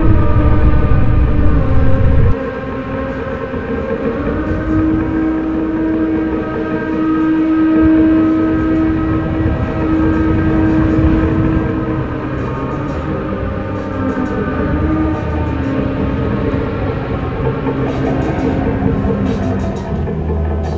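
Sustained layered droning tones, like a held chord, over a deep rumble that drops away about two seconds in; a steady ambient soundscape.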